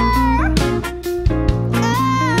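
Full band playing an instrumental passage: electric bass, drums and keyboard under a lead melody that holds a note and then bends up in pitch, with drum hits throughout.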